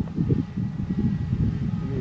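Low, uneven rumble of wind buffeting the microphone, with a radio-controlled model B-25 bomber flying past overhead, its twin motors faint beneath it.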